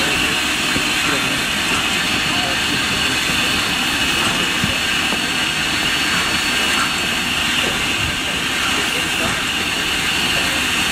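Steam locomotive No. 734, a 2-8-0, venting steam with a steady, loud hiss.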